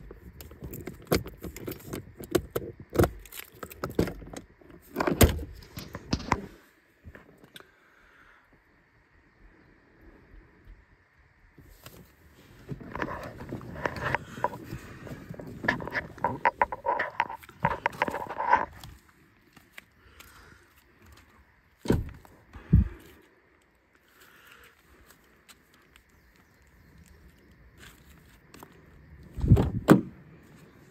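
Handling noise: rattles and clicks of small hard objects, a stretch of rubbing and rustling, and two short thumps less than a second apart.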